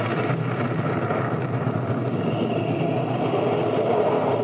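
Cartoon explosion sound effect: a long, steady rumbling roar that holds for about four seconds.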